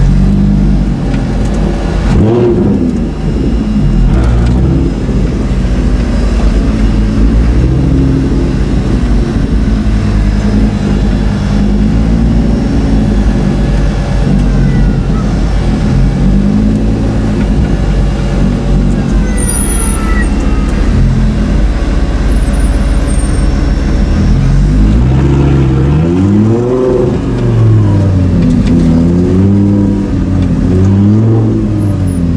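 Lamborghini Gallardo LP570-4 Super Trofeo race car's V10 engine, heard from inside the cabin, running at low revs in slow traffic with the revs rising and falling repeatedly. Near the end there is a quicker run of rev rises and drops.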